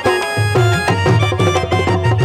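Instrumental passage of a live Saraiki folk song: held chords over a steady, fast drum beat, with no singing.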